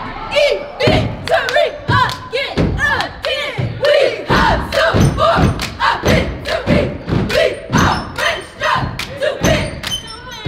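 A cheerleading squad stomps on the bleachers and claps in a steady rhythm of about two beats a second while shouting a cheer in unison.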